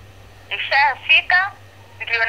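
A person's voice heard over a phone line, thin with no low end, speaking a short burst of words from about half a second in to about a second and a half, over a faint steady hum.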